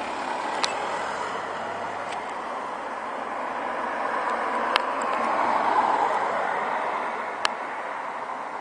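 A car passing on the road, its steady tyre and road noise swelling to a peak about six seconds in and then fading away, with a few small clicks over it.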